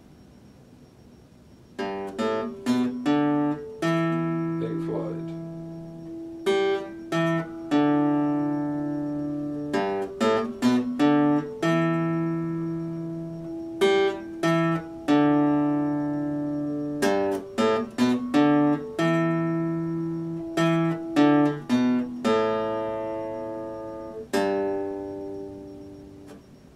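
Epiphone acoustic-electric guitar played solo: plucked notes and chords with ringing low bass notes, starting about two seconds in and ending with a last chord left to ring out near the end.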